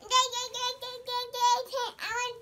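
A toddler girl's high-pitched voice in a sing-song string of about six short notes on nearly one pitch, dropping away at the end.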